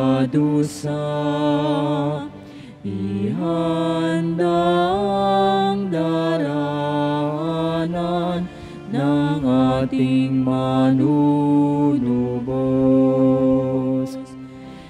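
Slow communion hymn music of long held notes, sliding up into new notes about three seconds in and again about nine seconds in.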